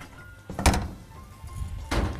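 Two dull knocks of a kitchen utensil against a pan, a little over a second apart, the first the louder, over soft background music.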